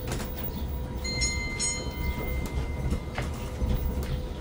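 Rubber-tyred tourist road train rolling slowly over cobblestones: a steady low rumble from the tractor and open carriages, with scattered rattles and knocks from the carriages.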